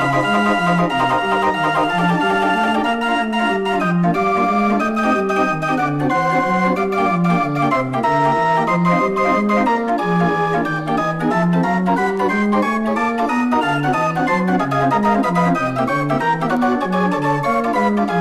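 Odin 42-key mechanical organ playing a jazz arrangement, a bass line of short, evenly paced notes under held chords and a melody line, at a steady loud level.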